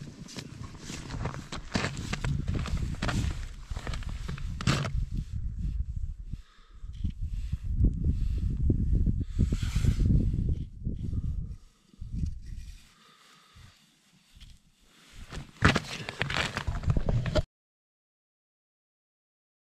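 Footsteps crunching on snow-covered ice, over an uneven low rumble, with a quieter stretch late on. A burst of crunches comes near the end, then the sound cuts off suddenly.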